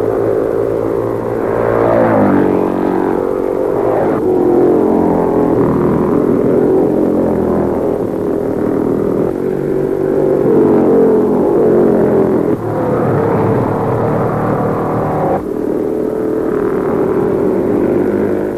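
Engines of 500 cc Formula 3 racing cars at speed, the note rising and falling as they accelerate and lift through the corners. The engine note changes abruptly every few seconds.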